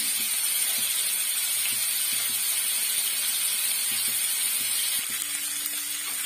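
Oil sizzling steadily around pieces frying in turmeric-yellow oil in an aluminium kadai, a continuous high hiss. A single click comes about five seconds in.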